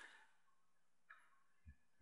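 Near silence: room tone, with a faint mouse click right at the start.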